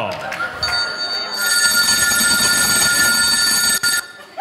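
Telephone ringing: a steady high ring that starts about half a second in, grows louder a moment later, and cuts off suddenly just before the end as the handset is picked up to answer the call.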